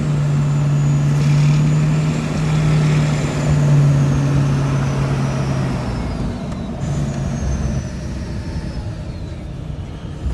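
Vehicle engine and road noise heard from inside the cabin while driving: a steady low drone that eases off about six seconds in, with a faint high whine slowly falling in pitch.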